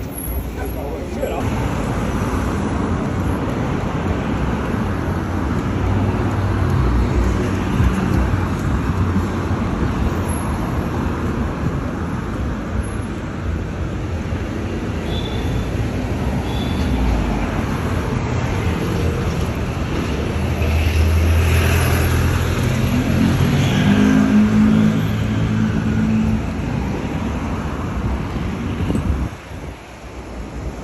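Busy city street ambience: continuous road traffic with vehicle engines passing, the low engine hum swelling as a heavy vehicle goes by about two-thirds of the way through.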